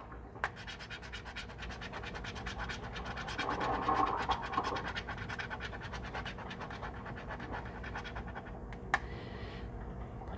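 A coin scratching the coating off a lottery scratch-off ticket in rapid, repeated strokes, loudest about four seconds in, with a single sharp tick near the end.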